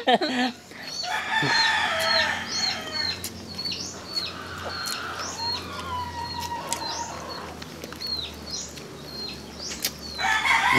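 Backyard chickens calling, with a string of short, high, falling chirps repeating about twice a second.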